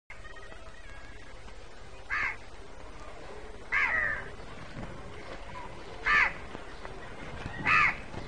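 A crow cawing four times, one short call every couple of seconds, over a steady low background hiss.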